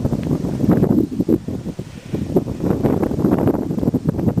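Wind buffeting the microphone, with the crinkly rustle of a carp bivvy's nylon fabric being pulled and handled.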